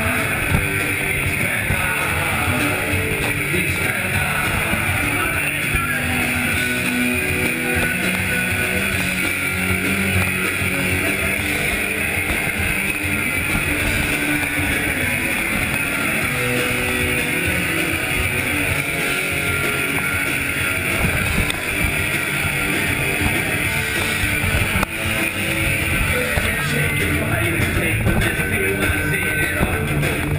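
Punk rock band playing live through a club PA: electric guitars, bass and drums, loud and continuous, recorded from within the crowd.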